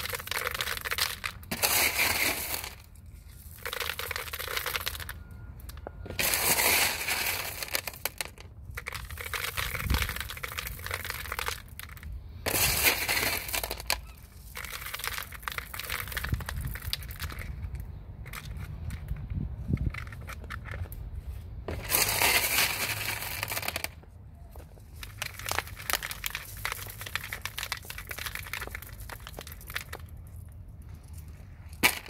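Expanded clay pebbles rattling and crunching against each other and the plastic pot as they are poured and pushed in around the plant's roots, in repeated bursts of a second or two.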